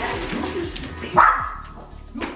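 A dog barking, with one short, loud bark a little over a second in.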